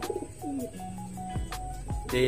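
Domestic racing pigeons cooing, a low gliding coo near the start, over background music with held notes.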